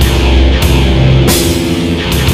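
Heavy metal instrumental made in the Walkband phone music app: sustained low notes under a drum kit, with two cymbal crashes, about half a second and a second and a quarter in.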